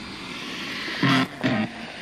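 Spirit-box app (Necrophonic) playing steady static, broken about a second in by two short, distorted voice-like fragments, which the listeners take to say "that's a bone".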